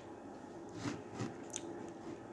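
A person chewing a mouthful of pasta, with a few faint, soft, wet mouth clicks about a second in.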